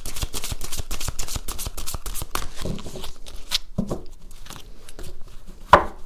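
An oracle card deck being shuffled by hand: a quick run of card flicks that thins out after about three seconds, with a sharper snap near the end.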